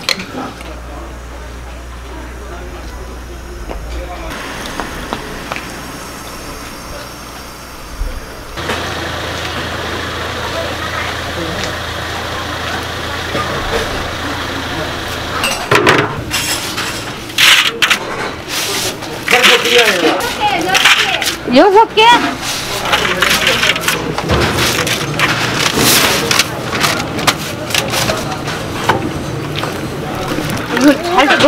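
Kitchen sounds around a large aluminium pot of boiling noodle water: a steady rushing noise, then from about halfway on sharp metal clanks as the heavy pot lid is handled and the noodles are stirred, with voices mixed in.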